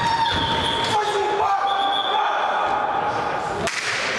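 Sounds of a futsal game in a large sports hall: long, drawn-out high calls or shoe squeaks over the hall's background noise, and one sharp thud of the ball near the end.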